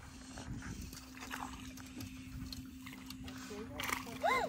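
A small dog whining briefly near the end over a faint steady hum, then a hooked bass splashing at the water's surface on the line just before the end.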